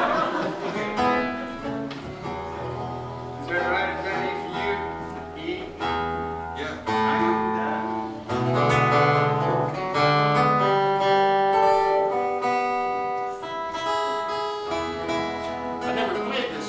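Two acoustic guitars played loosely, strummed chords and picked notes ringing out every second or two, as the players work out the key of E before a song.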